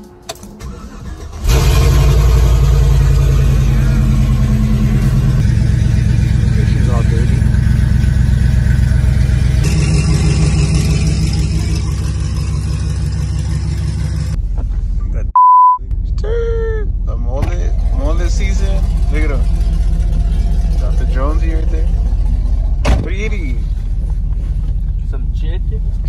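A vehicle engine is started and starts suddenly about a second and a half in, then runs loud and deep at a steady idle. A short high beep comes about halfway through.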